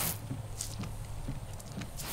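Aero all-season rubber wiper blade sweeping across a windshield wet from simulated rain, the water spray hissing over a steady low hum, with a slight squeak from the blade.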